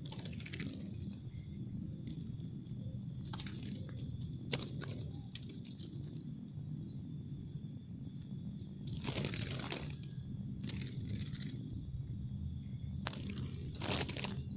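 Zebra doves fluttering as they are lifted out of a small cage and let go, with several short bursts of wing flapping and rustling, the longest about nine seconds in, over a steady low hum.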